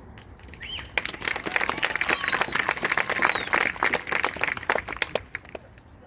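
Audience applauding from about a second in for roughly four seconds, with one long high whistle through the middle, as the band stops playing.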